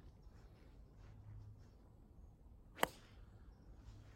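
A single sharp click of an 8-iron striking a golf ball off the tee, a little under three seconds in, over faint outdoor quiet.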